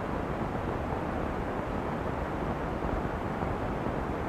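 Steady noise with no distinct events: the hiss and low rumble of an old film soundtrack.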